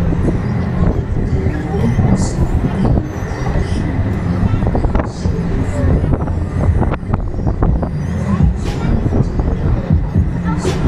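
1987 Huss Break Dance 1 fairground ride heard from one of its spinning cars: a loud, steady low rumble of the turning platform and cars, with scattered clicks and knocks.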